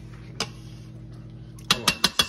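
Kitchen tongs clicking: one light click about half a second in, then a quick cluster of sharp clicks near the end, over a steady low hum.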